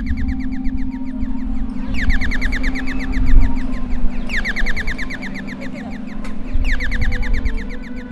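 Audible pedestrian crossing signal chirping: rapid runs of short, falling electronic chirps, about fourteen a second, repeating in bursts of about a second and a half with short gaps between, over a steady low hum.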